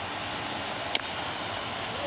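A single sharp crack of a bat hitting a baseball about a second in as the batter puts the pitch in play, over a steady hiss of ballpark background noise.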